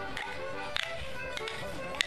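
A morris dance tune played on fiddle and squeezebox, with the dancers' wooden sticks clashing together in time, a sharp clack about every half-second.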